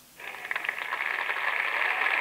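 Knife blade scraping in a long metallic scrape, starting a moment in and holding steady.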